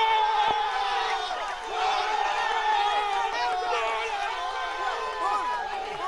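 A crowd of football fans cheering and shouting, many voices at once with long held yells, celebrating a goal.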